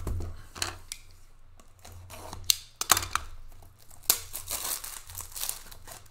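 Trading-card packaging being torn open and handled: a run of sharp tearing and crinkling of wrapper and cardboard, busiest in the middle of the stretch.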